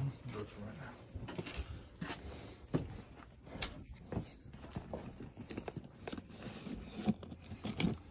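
Hand tools clinking and rattling as someone rummages through a Veto Pro Pac tool bag, with irregular short clicks throughout.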